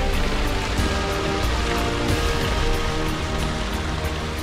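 Background music over water running and splashing from a small mountain stream.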